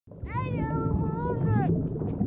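A single high, drawn-out wail, about a second and a half long, wavering slightly and dropping off at the end. It sits over a dense low rumble of room noise.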